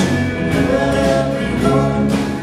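Live band playing with acoustic guitar, electric guitars and drums, with voices singing over the band.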